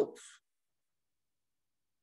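Near silence: a pause in a man's talk, with only the faint tail of his last word in the first half second.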